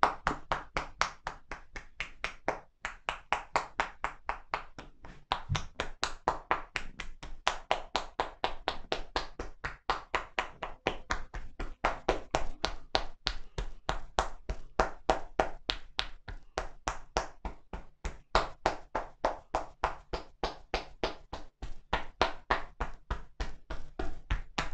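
Percussive shoulder-tapping massage: hands striking a seated person's towel-covered shoulders in a quick, even rhythm of about four to five slaps a second, without pause.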